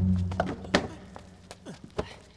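Heavy sacks landing on a wooden handcart: several dull thunks, the loudest about three quarters of a second in, over background music with low sustained notes that fade out.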